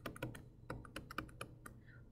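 Stylus nib tapping and clicking on a tablet's glass screen during handwriting: a quick, irregular run of faint sharp clicks.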